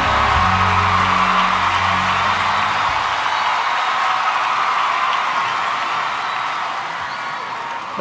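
Background music with low bass notes that stop about three seconds in, over a steady crowd noise of audience cheering that slowly fades.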